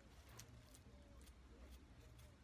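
Near silence with faint, light ticks about three a second: a palette knife flicking across a paint-loaded fan brush to spatter paint.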